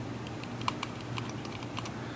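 Small, irregular clicks and light scratching as a cotton swab rubs and rolls the scroll ball of an Apple Mighty Mouse, over a low steady hum.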